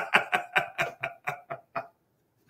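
A man laughing heartily, a quick run of short 'ha' pulses, about six a second, that fades away over about two seconds.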